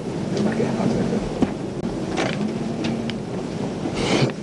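Steady room noise in a crowded room, with faint, indistinct voices underneath and no clear speech.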